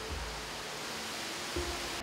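A steady static-like hiss that grows a little brighter and then drops away abruptly at the end, with faint background music underneath.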